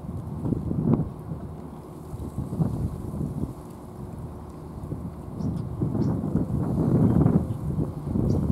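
Wind buffeting the microphone outdoors: an uneven low rumble that comes and goes in gusts and grows stronger over the last few seconds.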